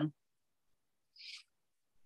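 Near silence, broken by one brief faint hiss a little over a second in.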